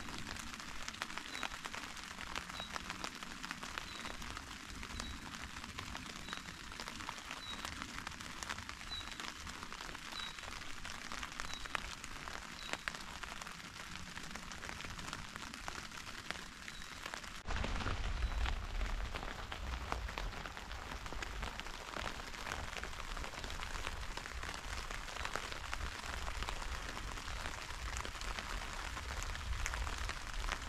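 Rain pattering on a tent's fabric fly, heard from inside the tent as a dense, steady patter of drops. About halfway through, a low rumble comes in and the sound gets louder.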